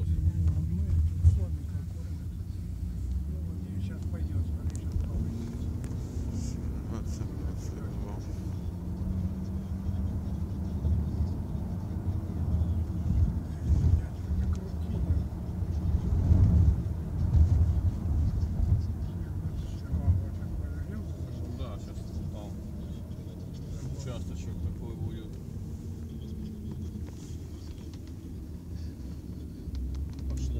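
Car driving, heard from inside the cabin: a steady low engine and road rumble.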